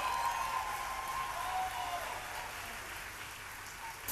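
Concert audience applauding and cheering, slowly dying down.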